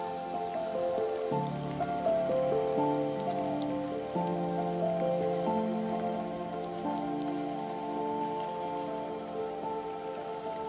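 Slow ambient background music of held chords that change every second or two, over a faint, steady patter like rain.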